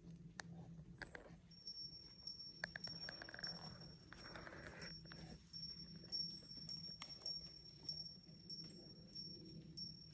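Faint outdoor backyard sounds: a steady high-pitched trill that starts about one and a half seconds in and keeps going with small breaks, over scattered light clicks and a short rustle around the middle.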